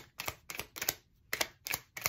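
A deck of tarot cards being shuffled by hand: a quick run of sharp card slaps and flicks, with a brief pause about halfway through.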